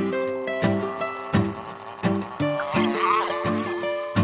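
Background music with a regular beat, about one and a half beats a second, under held, changing notes.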